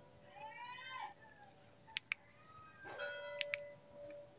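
Two faint animal calls in the background. The first, about a quarter second in, rises and falls in pitch over about a second. The second, near three seconds in, is steadier. A few soft clicks fall between them.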